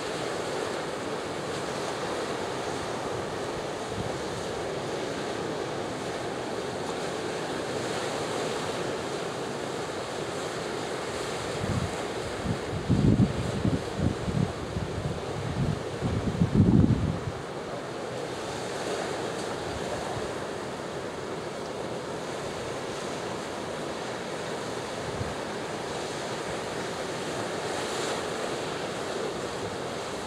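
Small waves washing among seaweed-covered shore rocks, a steady rushing wash. Wind buffets the microphone in low, irregular gusts for several seconds near the middle, the loudest sound here.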